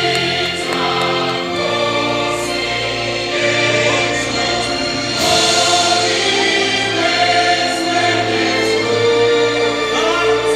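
Choral music: a choir singing long held notes over a musical accompaniment, loud and unbroken.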